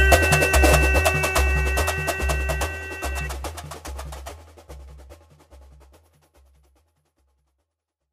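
Samba-enredo percussion playing out the end of the song: low drums keep a steady beat of about two strokes a second with snare and wood-block-like strokes on top, under a held chord that stops about three seconds in. The whole recording then fades out to silence by about six and a half seconds.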